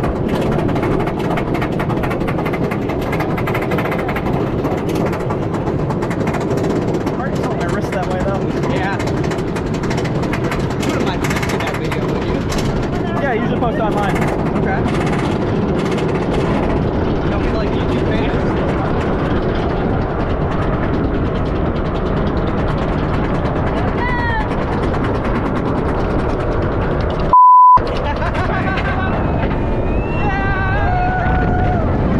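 Iron Gwazi's coaster train climbing its lift hill: a steady mechanical rumble and clatter from the chain and anti-rollback, with riders' voices now and then. Near the end a one-second pure censor beep replaces everything.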